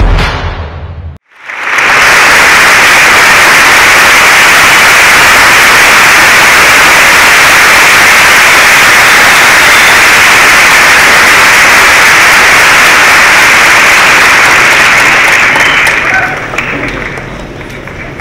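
Audience applauding loudly and steadily, starting about a second and a half in after a music sting cuts off, and dying down near the end.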